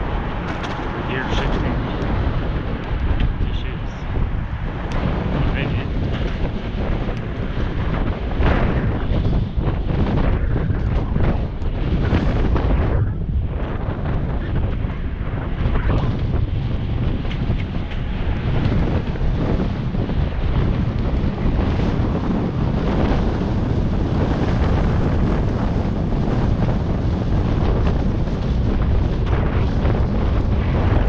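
Steady wind noise buffeting a helmet-mounted action camera's microphone while riding, mostly a low rumble.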